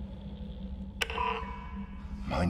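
A low steady drone, then about a second in a sharp click and a short electronic beep from a sci-fi control console as its microphone and loudspeaker system is switched on.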